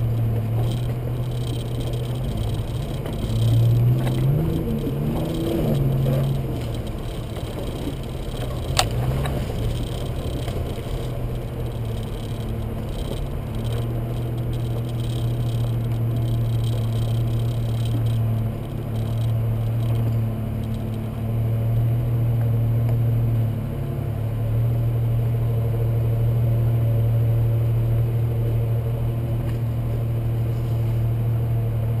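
Jeep engine running at low trail speed, a steady low hum with a short rise and fall in revs a few seconds in. A single sharp knock comes about nine seconds in.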